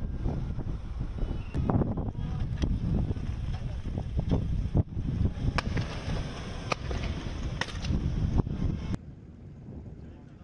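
Scattered gunshots: about eight sharp cracks at irregular gaps of a second or so, over a steady rumbling noise. The shots stop near the end, leaving a quieter low hum.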